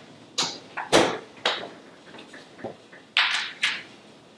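A refrigerator door shut with a thud about a second in, among several lighter knocks and handling sounds.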